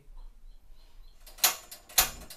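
Knob of a Rinnai gas stove being turned, its igniter giving two sharp clicks, one about a second and a half in and one at the end.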